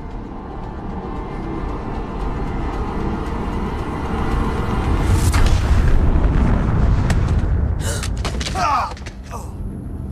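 Film sound design for a shockwave blast: a low rumble builds for about five seconds and ends in a boom that throws two men into the air, over dramatic score. A brief shout follows near the end.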